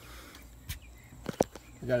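Two light clicks, about two-thirds of a second apart, from hands working the RV outside-kitchen fridge door and its door stop, over a faint low hum.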